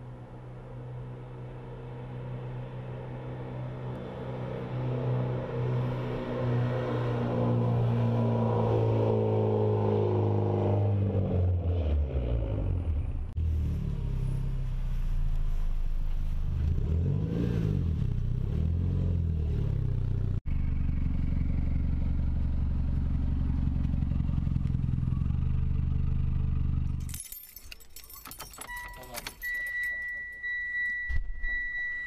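Mitsubishi Lancer Evolution X's turbocharged four-cylinder engine approaching and growing louder, then idling steadily after pulling up. Near the end the engine stops, keys jingle and an electronic chime beeps.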